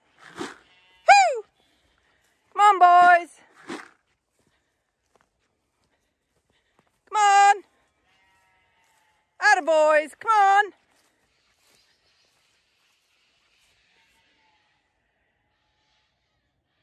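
Bleating calls with a quavering pitch, about six short ones over the first eleven seconds, one of them falling in pitch, followed by quiet.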